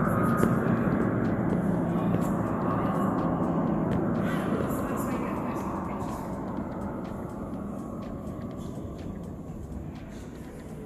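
Steady aircraft-engine drone from a flight-simulator exhibit, loud at first and fading steadily away, with indistinct voices.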